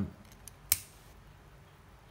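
Hero 9018 all-metal fountain pen being handled: a few faint ticks, then one sharp metallic click about three-quarters of a second in.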